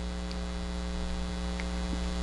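Steady electrical mains hum: a constant low drone with a ladder of higher overtones, unchanging throughout.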